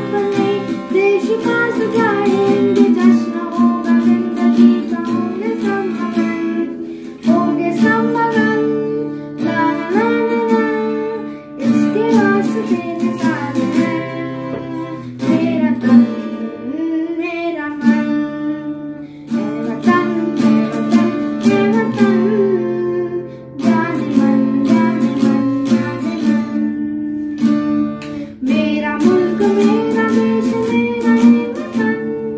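A boy singing a song while strumming an acoustic guitar, the voice in phrases over steady chords.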